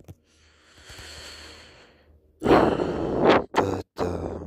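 A person breathes out softly, then lets out a louder, longer sigh about halfway through, followed by a short breath.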